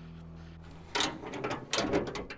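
Trunk lid of a custom 1941 Buick being opened: a sudden latch release about a second in, then a run of mechanical clicks and rattles from the lid's hinges and struts as it rises.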